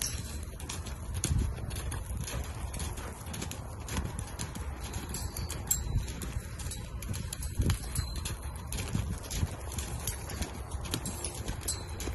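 A sorrel APHA Paint mare loping loose on soft dirt footing. Her hoofbeats thud over and over, unevenly spaced, as she circles.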